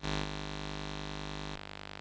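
Steady electrical hum and hiss from videotape playback, before any recorded sound begins; it drops in level about one and a half seconds in.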